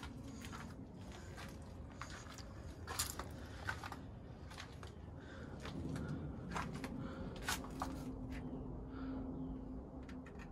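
Faint footsteps and scattered light clicks of someone walking slowly over leaf-strewn ground, with a low steady hum that comes in about six seconds in.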